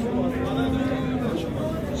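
A head of cattle mooing: one long, steady, low call of a little over a second, with voices in the background.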